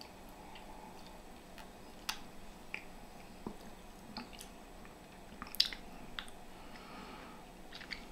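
Faint mouth sounds of a person tasting a sip of a drink: a few scattered soft clicks and lip smacks over quiet room tone.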